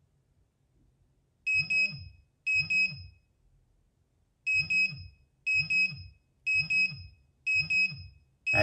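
Pudibei NR-750 radiation monitor's dose-rate alarm sounding: quick double beeps about once a second, starting about a second and a half in, with one skipped beat near the middle. The alarm, set at 0.50 µSv/h, is set off by the americium-241 source in an opened ionisation smoke detector lying against the meter.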